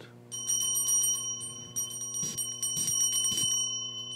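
A steady, bell-like high ringing that starts abruptly about a third of a second in and holds without fading, with faint light ticks over it and a low electrical hum beneath.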